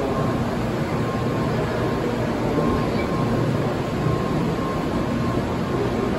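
Doctor Yellow 923-series Shinkansen inspection train moving slowly along the platform: a steady, even rumble from the passing cars, with a faint intermittent high tone.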